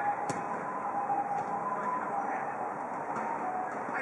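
Futsal play: a sharp ball kick shortly after the start, a few fainter knocks later, and faint players' calls over a steady background hum.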